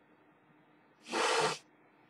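A single forceful, hissing burst of breath through the nose, about half a second long, a little over a second in, from a man who has just taken a pinch of nasal snuff.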